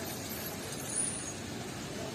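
Outdoor street ambience: a steady background of road traffic, with a brief high-pitched squeal about a second in.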